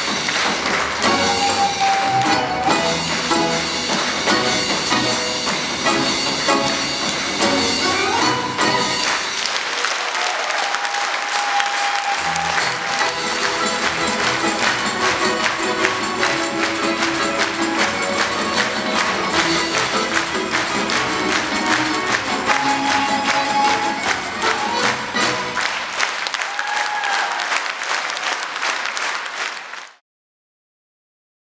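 A Russian folk-instrument ensemble of domras, gusli, bayan, cajon and tambourine playing an up-tempo piece, with long held melody notes over a busy percussive accompaniment.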